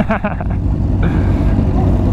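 Several sport-bike engines idling together at a standstill, a steady low rumble, with a short laugh at the start.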